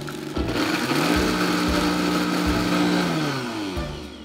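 Countertop blender motor spinning up with a rising whine, running at a steady pitch while it purées a creamy liquid, then winding down near the end.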